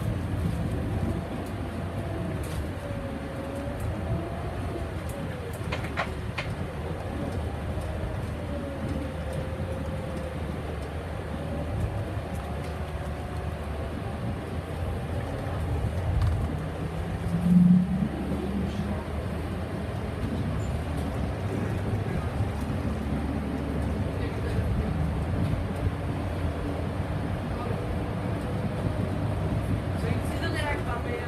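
Inside a Solaris Urbino 15 III city bus on the move: a steady low engine and road rumble, with a faint whine that rises and falls as the bus changes speed. A brief louder low sound comes a little past halfway.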